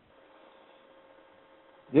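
A pause in speech filled by a faint, steady electrical hum on the recording, with a man's voice starting again at the very end.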